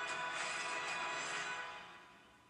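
Film-trailer music playing from a television's speakers in a room, sustained and then fading out near the end.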